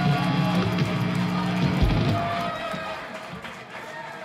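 Live rock band's last chord ringing out on electric guitars and bass, closed by a low drum hit about two seconds in, after which the sound dies away into audience noise and clapping.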